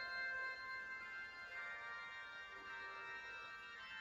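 Quiet recorded anthem music playing back, with long held chords that change about a second and a half in.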